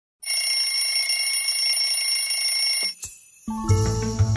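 A smartphone alarm ringing steadily in a high, multi-tone electronic ring for nearly three seconds, then cut off abruptly with a small click as it is silenced. About half a second later, music with a deep bass line starts.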